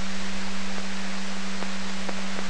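VHF scanner receiver hissing steadily with a constant low hum tone, the channel open between dispatch voice transmissions.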